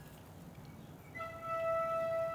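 A single steady pitched tone with a few overtones, coming in about a second in and held.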